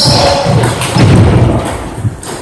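Repeated heavy thuds of table tennis players' fast footwork on the hall floor during a rally, with a few sharper knocks among them.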